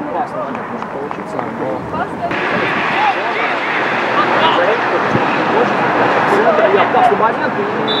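Football players and coaches shouting on the pitch, several voices overlapping in a jumble. The sound changes abruptly and gets louder about two seconds in, and a single sharp thump comes about five seconds in.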